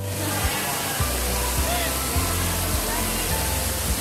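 Rain Room installation's artificial rain pouring from the ceiling nozzles onto the floor in a steady hiss, with background music carrying a steady bass line and faint voices of other visitors.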